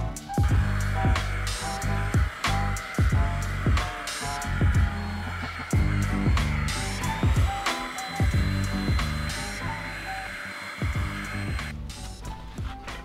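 Small handheld vacuum running with a steady whine, cutting off near the end, under background music with a steady beat.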